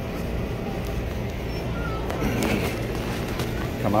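Steady low hum of running machinery, with faint voices in the background about halfway through.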